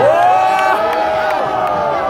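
Crowd of spectators letting out one long shout, held for nearly two seconds, in reaction to a rap battle punchline.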